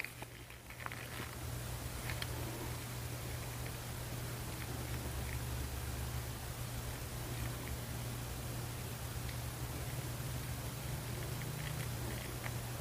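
Quiet room tone: a steady low hum with faint hiss and a few faint, scattered ticks of plastic being handled while UV resin is squeezed slowly from a bottle into a plastic mixing cup.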